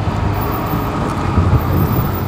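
Steady road traffic noise from a busy street, a continuous low rumble of passing cars.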